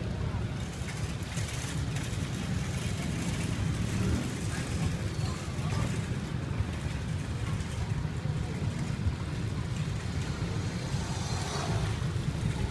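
Street ambience: a steady low rumble like traffic, with indistinct background voices.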